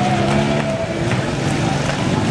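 Small motorcycle engines running at low speed as two motorbikes ride slowly past, the engine note shifting a couple of times.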